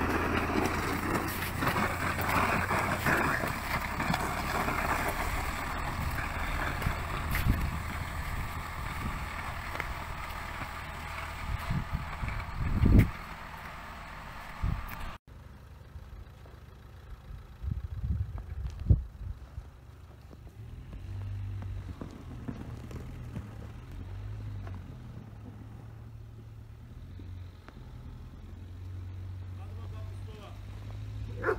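A tractor's front-mounted snow blade scrapes snow along a paved road over the steady hum of the tractor's engine. It cuts off suddenly about halfway through. After that, a quieter engine hum and a few knocks follow.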